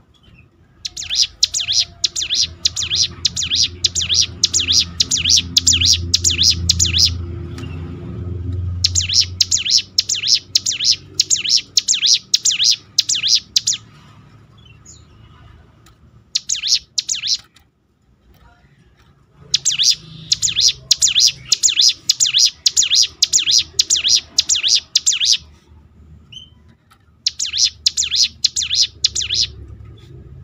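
Ciblek gunung (a prinia) singing in long, rapid rattling trills. Five bouts are separated by short pauses, the shortest a brief burst about 17 seconds in.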